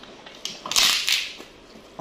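Biting into and crunching a crispy fried cracker: a light crackle, then a louder crunch lasting about half a second, a little under a second in.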